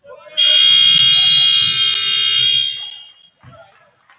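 Gymnasium scoreboard horn sounding the end of the first quarter: one loud, steady buzz of about two and a half seconds, starting a fraction of a second in.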